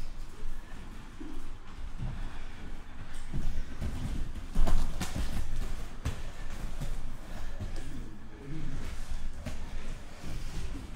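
Bare feet stepping and stamping on judo mats and gi cloth being gripped and snapped during standing grip fighting, a run of irregular thumps with a louder thump about halfway through.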